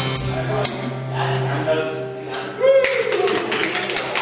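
Live music from a one-man entertainer played over a PA in a hall: a held low note runs under the music and stops about two seconds in. A man's voice comes in over the PA near the end.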